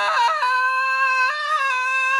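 A woman's single long, high, steady scream, held for nearly two seconds with a small drop in pitch near the start: the cry of a woman in labor being whirled in a chair.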